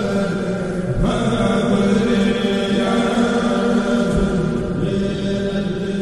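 Chanting of a khassida, a Senegalese Mouride devotional poem in Arabic, with the voices holding long, drawn-out notes without a break.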